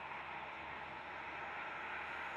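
Steady hiss of motorway traffic, cars and tyres passing at speed.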